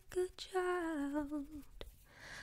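A woman softly humming a melody close to a foam-covered microphone: a short note at the start, then a longer phrase that falls in pitch, followed by a small click near the end.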